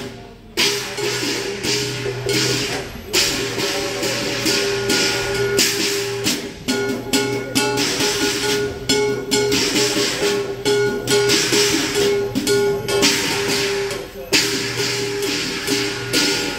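Qilin dance percussion band of drum, cymbals and gong playing a continuous beat: frequent crashing cymbal clashes over a steady ringing gong tone.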